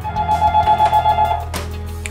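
Electronic ringer of a Panasonic office desk phone ringing in a fast two-tone warble. It cuts off with a click about one and a half seconds in, as the handset is lifted.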